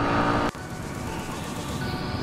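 Motorcycle riding noise, engine and wind, that cuts off abruptly about half a second in, leaving quieter road noise. Faint background music starts near the end.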